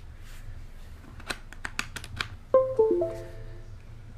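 A USB plug is pushed into its socket with a quick series of plastic clicks. Then the laptop gives a short Windows device chime, a few clear notes stepping down in pitch, as the USB device is detected.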